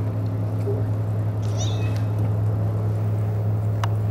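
Steady low electrical hum, with a short, high, wavering meow about a second and a half in and a brief falling squeak near the end.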